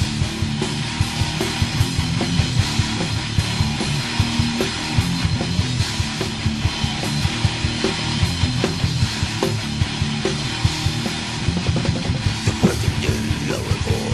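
Instrumental heavy metal passage with no vocals: electric guitars and bass playing over fast, dense drumming.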